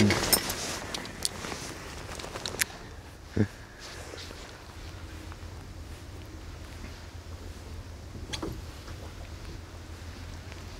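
Quiet outdoor background with a steady low rumble, a few faint clicks from rod and reel handling during a lure cast and retrieve, and one short dull knock about three and a half seconds in.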